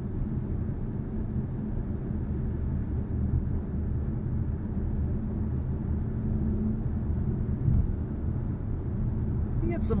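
Cabin noise inside a 2024 Dodge Hornet R/T driving in electric mode with the gas engine off: a steady low tyre roar and wind noise, with the tyres going over bumps.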